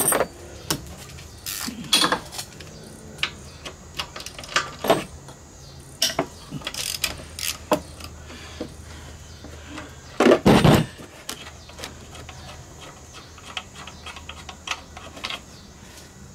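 Hand tool clicking and clinking on metal as the pressure washer pump's mounting bolts are loosened, in scattered short taps with a run of quicker clicks. There is one heavy thump about ten seconds in.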